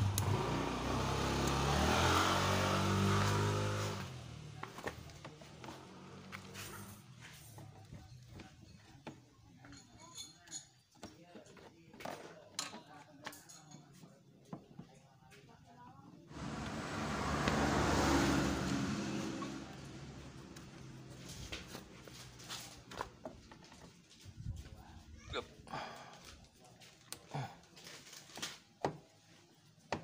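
A vehicle engine swells and fades twice, for about four seconds at the start and again just past the middle. In the quieter stretches a screwdriver clicks and scrapes against bolts.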